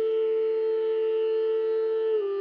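Intro flute music holding one long, steady note over a soft, steady drone.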